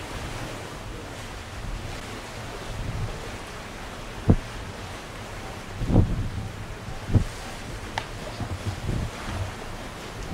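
Wind buffeting the microphone over a steady rush of sea and wind, with several sudden low thumps of gusts, the sharpest about four seconds in.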